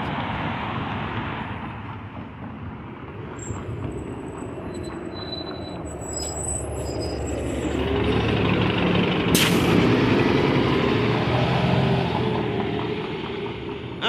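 City street traffic with a large motor vehicle passing close. Its engine hum builds through the middle and peaks with a short sharp hiss about two-thirds of the way through.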